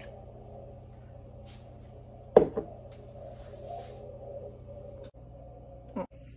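Cream pouring from a glass jar into a stainless steel pot, a low steady pouring noise, with one sharp knock about two and a half seconds in.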